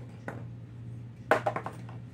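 A quick cluster of sharp plastic clicks and knocks a little over a second in, from small hard-plastic fishing bobbers being handled, with one fainter click near the start. A steady low hum runs underneath.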